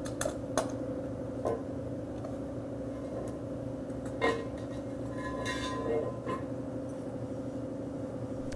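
Scattered clinks and knocks of a Scott Air-Pak SCBA cylinder and its metal backpack frame being handled, the loudest about four seconds in, with a brief rattle about a second later, over a steady low hum.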